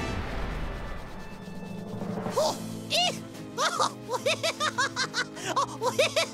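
Cartoon villain's cackling laugh, a quick run of short rising-and-falling 'ha' syllables starting about two and a half seconds in, over background music. Before it, a rushing noise fades away over the first two seconds.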